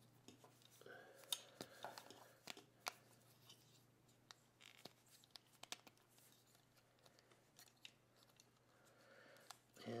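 Faint, scattered clicks and ticks of the plastic joints and parts of a Reveal the Shield Scourge Transformers figure being folded and pegged into place, over a low steady hum.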